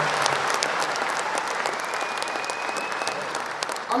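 A large audience applauding, dense clapping that eases off slightly as it goes.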